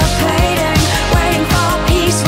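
Background music: an 80s-style pop remix with a steady drum beat and a wavering melody over it.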